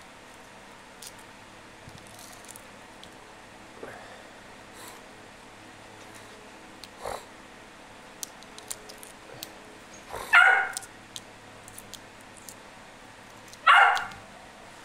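A domestic animal calls twice: short, loud cries about ten seconds in and again near the end. Between them, faint small crackles come from a boiled egg's shell being peeled by hand, over a steady low hum.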